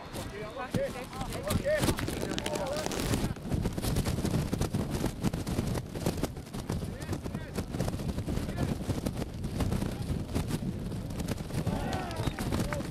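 Footballers shouting and calling to each other on the pitch, a few calls in the first three seconds and again near the end, over steady wind rumble on the microphone.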